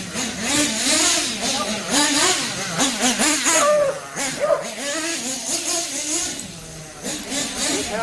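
Glow-fuel nitro engine of a Kyosho FO-XX GP RC buggy running under load, its pitch rising and falling continually as the throttle is worked.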